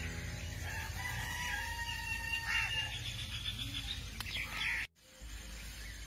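A rooster crowing once, a long call starting about a second in. The sound drops out for a moment near the end.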